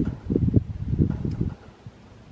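Wind buffeting the microphone in irregular low gusts that die down about a second and a half in.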